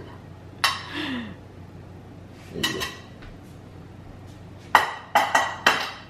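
Metal cutlery and ceramic plates clinking as avocado is served out onto breakfast plates on a stone countertop: a few scattered knocks, then a quick run of four ringing clinks in the last second and a half.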